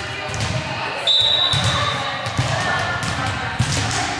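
A volleyball being hit and bouncing on a gym floor: several sharp smacks echoing in a large hall, with players' voices. A steady high-pitched tone starts about a second in and lasts about a second.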